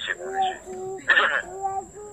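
A person's voice: a short burst of words and several drawn-out hummed "mm" sounds, over a faint steady high whine.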